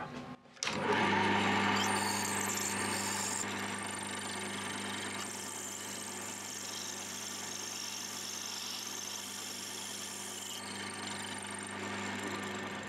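Small metal lathe starting up about a second in and running with a steady hum while a twist drill bores a 4 mm hole into brass hex stock. A higher cutting hiss comes and goes as the drill is fed in.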